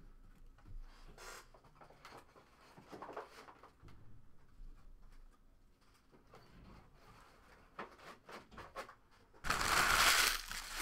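Soft handling noises and a few small clicks, then, near the end, a sudden loud crinkling of foil trading-card pack wrappers being gathered up.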